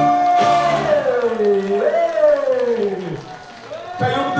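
A man's singing voice holds one long note, then slides down, rises briefly and falls away in a long downward glide to close the song. The backing track under it stops about a second in.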